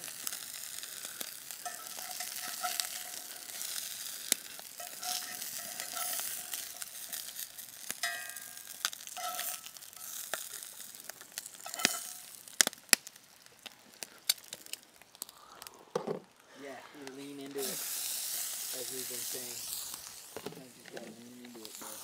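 Bacon-stuffed brook trout sizzling in a cast-iron skillet over a campfire: a steady frying hiss with many scattered sharp pops.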